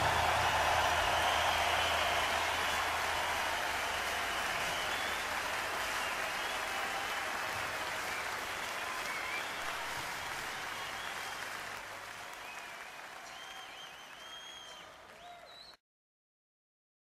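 Audience applause at the end of a live music recording, fading out steadily, with a few faint high squeaks near the end, then cut off abruptly.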